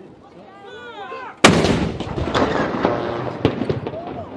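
A towed field howitzer fires a salute round about a second and a half in: one sharp, very loud boom followed by a long rolling echo that slowly dies away.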